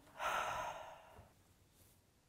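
A woman sighing once, a breathy exhale lasting about a second.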